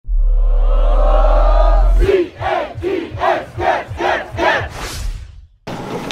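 Channel intro sting: a loud held chord over a deep bass tone for about two seconds, then chant-like crowd shouts at about three a second, stopping about half a second before the end.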